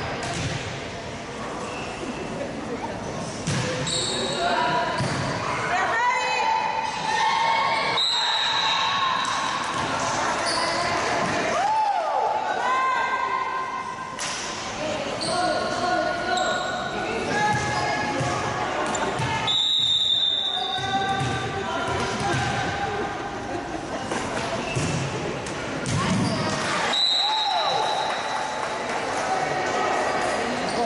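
Volleyballs being hit and bouncing on a hardwood gym floor, with short high squeaks of sneakers on the court and players' overlapping voices throughout, in a large echoing gym.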